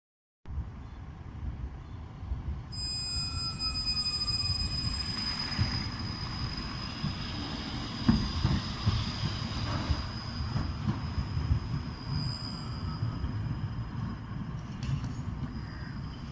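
Modern low-floor tram passing on its rails: a continuous rumble of the wheels with a high steady electric whine from its drive and a short falling tone a few seconds in. A single sharp knock about eight seconds in.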